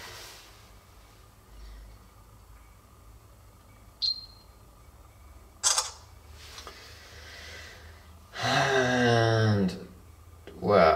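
A Samsung Galaxy phone camera taking a photo: a short high beep about four seconds in, then a sharp shutter click a couple of seconds later. Near the end a person makes a drawn-out voiced sound, about a second and a half long.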